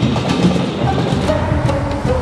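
Seoul metropolitan commuter electric train running along the tracks, mixed with background music.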